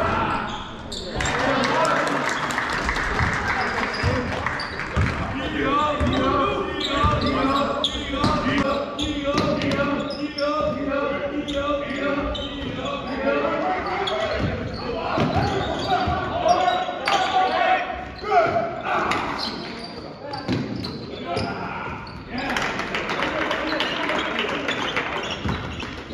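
A basketball being dribbled and bouncing on a hardwood gym floor, under indistinct voices of players and spectators, all echoing in a large gym.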